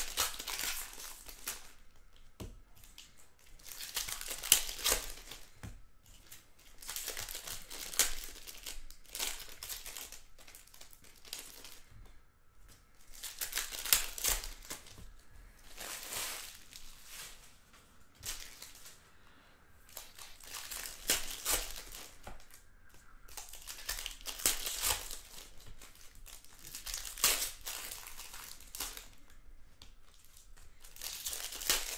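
Foil wrappers of hockey card packs being torn open and crinkled by hand, in repeated bursts of crinkling and tearing every few seconds.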